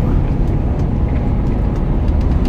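Steady low rumble of a truck's engine and tyres on the road, heard from inside the cab while driving.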